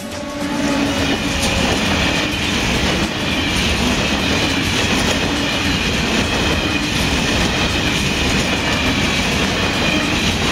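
Freight train of covered hopper wagons rolling past close by: a steady, loud rumble and clatter of steel wheels on the rails.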